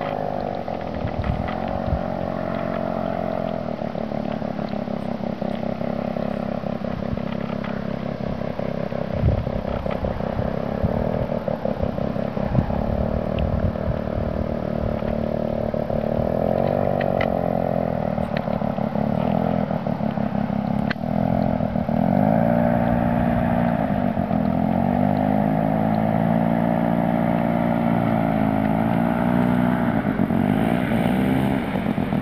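Paramotor engine and propeller running close by, its pitch swelling and dipping with the throttle several times and a little louder in the second half, with a few light clatters.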